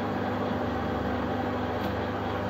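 Wilson lathe running steadily at slow speed for screwcutting, a constant even hum from its motor and gearing.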